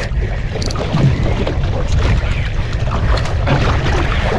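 Wind buffeting the microphone, with sea water washing against a small outrigger boat.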